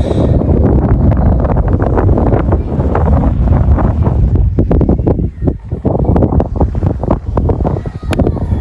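Wind buffeting the camera microphone: a loud, gusting low rumble that drops briefly about five seconds in.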